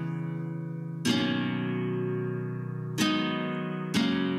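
Guitar chords at the end of a song, each strummed once and left to ring out slowly: one about a second in, another near three seconds, and a third right at the end.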